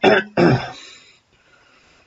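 A man clearing his throat, in two bursts within the first second, the second trailing off.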